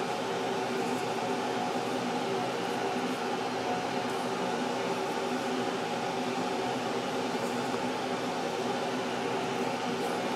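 Air conditioner's fan running steadily: an even hum with a few steady tones held over a soft rushing noise, unchanged throughout.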